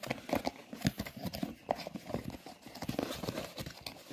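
Cardboard switch packaging being handled and opened by hand: a run of irregular light knocks, taps and scrapes of card against card.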